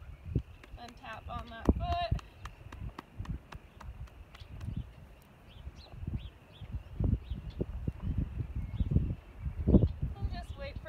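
A foal's hoof held up and tapped by hand, a scatter of light knocks. Gusty low rumble from wind on the microphone is loudest late on, with a few murmured words a second or two in.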